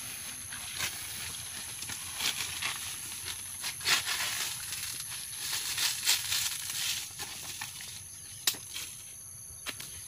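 Dry banana leaves rustling and crackling as they are pulled and torn away from around a banana bunch, loudest from about two to seven seconds in, followed by two sharp snaps near the end. A steady high-pitched insect drone sounds underneath.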